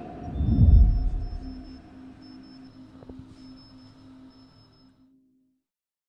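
Outro logo sting: a deep low boom swells about half a second in over held musical tones with faint high glints, then the whole sound fades out about five seconds in.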